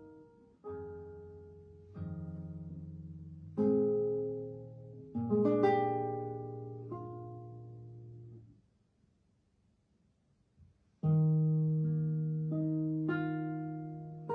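Solo classical guitar: plucked chords and single notes that ring and fade away, a pause of about two seconds just past the middle, then a loud low chord that rings on.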